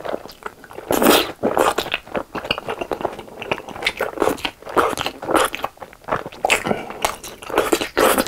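Close-miked eating: crunchy bites into a sugar-coated, batter-fried Korean hot dog and chewing, an irregular run of loud crunches about every half second to a second, with wet mouth sounds from the saucy tteokbokki.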